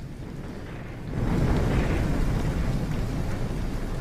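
Anime sound effects of a large fire: a deep, noisy rumble and hiss around the Colossal Titan, which swells about a second in and then holds steady.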